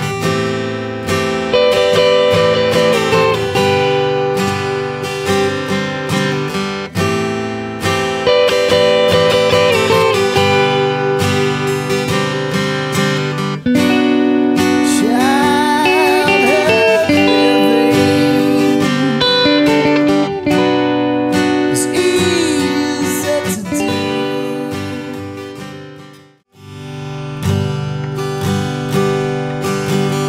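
Guitar music: rhythmic strummed chords, then a sustained passage with sliding, bending notes over held chords. It fades to a brief silence near the end, and a strummed acoustic guitar starts up on a G to A minor 7 chord change.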